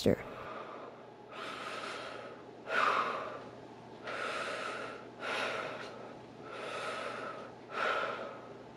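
A person breathing audibly close to the microphone: about six soft breaths in and out, alternating longer and shorter, roughly one every second and a half.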